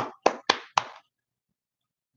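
One person clapping hands: four quick claps about a quarter second apart, stopping just under a second in.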